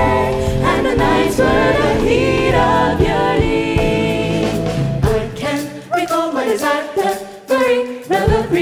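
A mixed vocal jazz ensemble singing in close harmony, backed by a jazz band with bass and drums. About five seconds in the low accompaniment drops away and the voices carry on almost alone.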